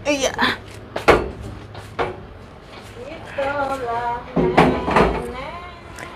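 Several sharp knocks and clacks of household things being handled during cleaning, the loudest about a second in and around five seconds, with a woman's voice speaking between them.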